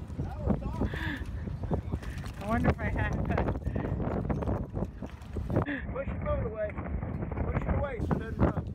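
Indistinct voices of several people talking in the background, with wind buffeting the microphone.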